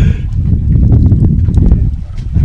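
Wind buffeting the microphone on a small boat at sea: a loud, uneven low rumble with a scatter of light knocks.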